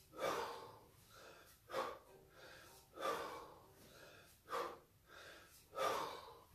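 A man breathing hard under the exertion of kettlebell snatches. Sharp, forceful exhales come about every second and a half, with softer breaths between them.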